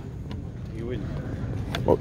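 Background of a busy indoor hall: a steady low hum with faint talk from other people, and a man saying "oh" near the end.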